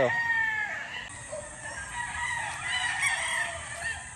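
A gamecock crowing: one long call about a second long at the start that drops in pitch at its end, followed by fainter calls from other fowl.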